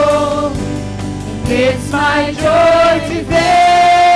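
Live worship band: several voices singing together over acoustic guitar, bass guitar and keyboard, ending on one long held note.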